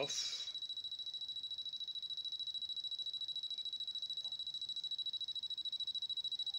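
A steady high-pitched whine that pulses quickly and evenly all through, with the tail of a spoken word at the very start.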